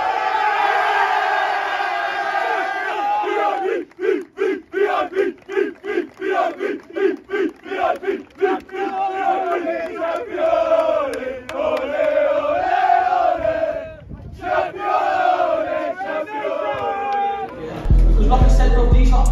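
A group of men chanting and shouting together in a trophy celebration. Near the middle they shout in a fast unison rhythm of about three shouts a second, then go on with a drawn-out sung chant.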